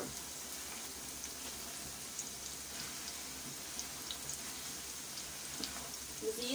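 Ridge gourd sabzi sizzling steadily in oil in a steel kadhai, with scattered small crackles. The water has cooked off and the oil is separating from the masala.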